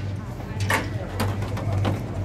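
Hood of a 1969 Dodge Super Bee being unlatched and lifted: a sharp click from the latch release about two-thirds of a second in, then a couple of fainter clunks as the hood goes up, over a steady low hum.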